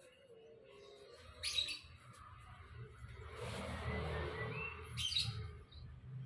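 Small birds chirping, with two sharp loud chirps about a second and a half in and again near five seconds, and a few short high chirps near the end. A rushing noise swells up in between, over a low rumble.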